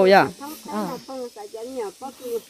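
Speech only: a woman talking, loudest for the first moment and then in softer short phrases.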